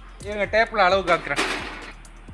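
A person speaking, with a short burst of hiss about two-thirds of the way through.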